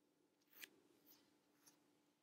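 Near silence, with three faint, short rustles about half a second, a second and a second and a half in, from a body shifting on a yoga mat.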